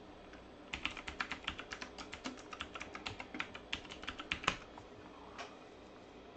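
Rapid typing on a computer keyboard: a quick run of keystrokes lasting about four seconds, ending with a slightly louder keypress.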